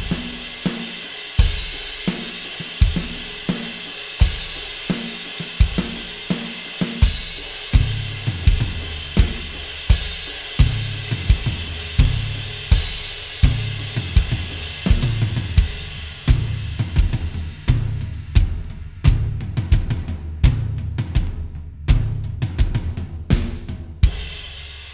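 Acoustic drum kit playing a steady groove of kick drum, hi-hat and cymbals, with the backbeat hits moved off the snare and onto the toms. Lower, ringing tom strokes come in from about eight seconds, and the cymbal wash thins out in the second half.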